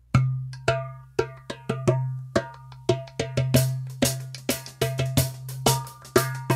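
Rhythmic percussion hits with a bright, ringing metallic tone. They start suddenly and come faster and louder after about halfway, over a steady low hum.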